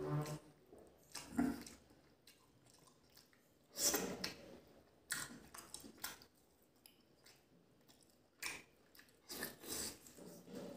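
Close-miked eating sounds: wet chewing and mouth noises of curry and rice eaten by hand, in irregular bursts with quieter gaps, the loudest about four seconds in.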